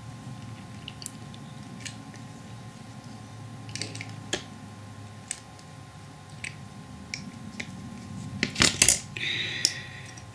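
Small clicks and ticks of pliers gripping and bending thin copper-coated wire (0.8 mm TIG rod) and handling it on a workbench, with a louder cluster of knocks about a second before the end.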